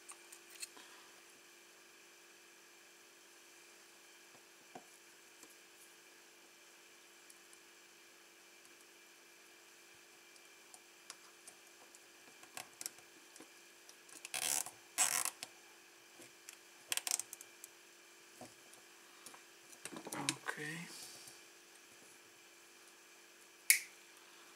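Plastic zip tie being fastened around a bundle of wires: a few short rasping zips and clicks in the second half, over a faint steady hum.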